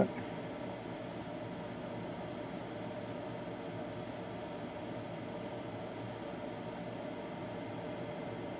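Steady faint hiss and hum of room tone with a faint constant tone, unchanging throughout and with no distinct sounds.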